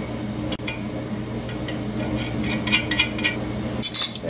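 Light metallic clicks and clinks of steel nuts being handled and threaded by hand onto a steel cylinder stud, scattered and more frequent in the second half, over a steady low hum.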